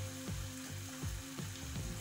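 Steak strips and sliced peppers sizzling in a frying pan on a gas burner, a steady hiss.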